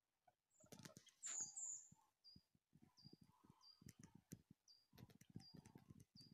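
A bird's short, high, downward-sliding call note repeated about every half second to second, with two louder high calls about a second in. Faint irregular crunches run under it, like footsteps on frozen snow.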